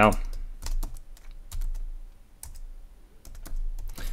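Typing on a computer keyboard: scattered keystrokes in short uneven runs, with gaps between them.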